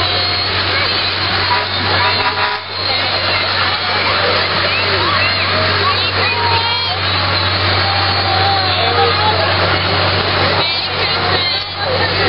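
Many spectators' voices chattering and overlapping, over a steady low hum of slow-moving vehicle engines.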